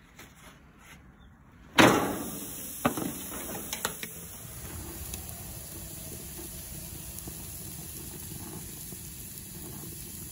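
A T-bone steak hitting the hot grate of a gas grill, about two seconds in: a sudden loud hiss that settles into steady sizzling, with a few light clicks soon after.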